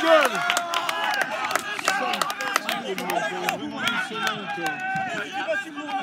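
Several people on the pitch shouting and calling out over one another, celebrating a goal, with scattered sharp clicks through it.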